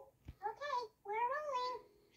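High-pitched cartoon chipmunk voice from the film, two short whiny vocal sounds with rising and falling pitch, played through the TV's speakers and picked up in the room.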